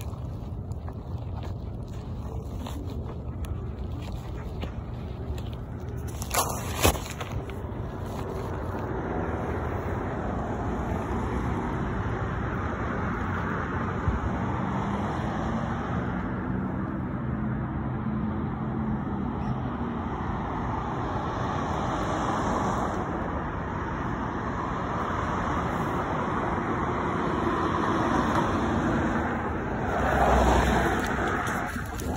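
Road traffic on a city street passing by, with a vehicle's low engine hum building through the middle and a swell of passing-car noise near the end. Two sharp clicks come about a quarter of the way in.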